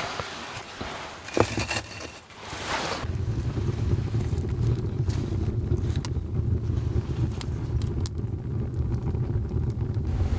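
Clicks and rustles of fireplace embers and wood being handled, then, about three seconds in, the steady low rumble of a wood fire burning in a stone fireplace, with occasional sharp crackles.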